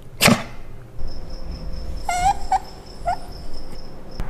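Italian greyhound whining: three short high whimpers about two seconds in, the first the longest with a wavering pitch. Just before them, right after the start, comes one loud sharp sound, the loudest thing heard.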